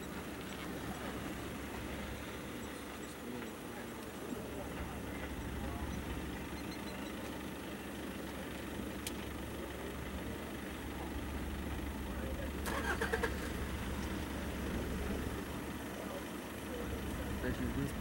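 A vehicle engine running with a steady low hum, which grows louder for a few seconds about two-thirds of the way through.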